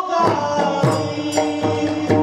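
Marathi devotional kirtan music: a chanted, sung melody over sustained accompanying notes, with repeated drum strokes through it.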